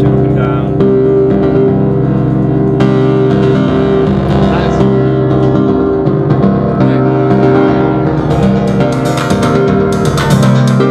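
Electronic dance music from a live synth rig: a repeating sequenced synth line over a steady beat and bass. The synth line's notes shift every second or two as its steps are reprogrammed on an iPad step sequencer.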